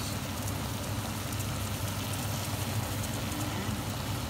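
Pork chunks sizzling and crackling in hot caramelized sugar in a pot, with a steady low hum underneath.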